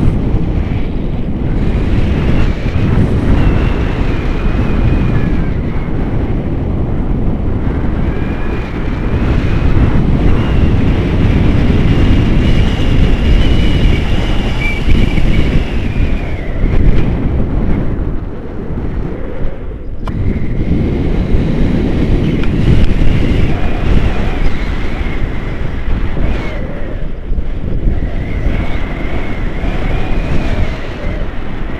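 Airflow buffeting the camera's microphone in flight under a tandem paraglider: a loud, steady rumble of wind that dips briefly twice. A faint, thin high tone wavers in and out above it.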